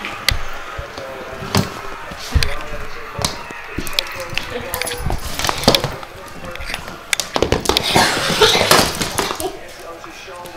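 Close knocks, clatters and scrapes of a GoPro being mouthed and pushed about on a wooden floor by a puppy, coming thickest near the end. People laugh over it.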